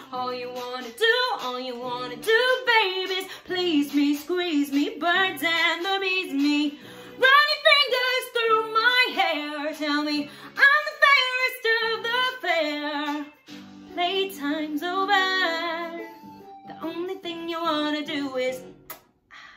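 A woman singing a pop-style musical-theatre song over a backing track, in phrases with short breaks between them. About thirteen and a half seconds in the voice briefly drops back while soft chords carry on.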